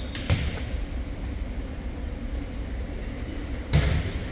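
A volleyball serve struck by hand: one sharp smack near the end, over a steady low gym hum and faint crowd murmur, with a softer knock shortly after the start.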